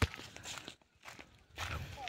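Footsteps on a dirt path strewn with dry leaves, irregular scuffs, with a sharp knock right at the start.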